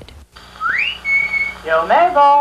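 A whistle slides up to a high note and holds it for about half a second. A second rising glide near the end leads straight into brassy music.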